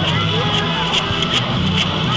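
Street parade sound: marchers' rhythmic percussion, sharp beats a couple of times a second, over crowd voices and a steady low hum.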